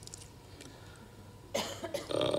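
A short, sharp cough close to the microphone about one and a half seconds in, after a quiet pause.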